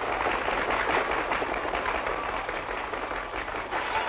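Swimmers splashing hard through the water in a race, a dense spatter of splashes mixed with crowd noise.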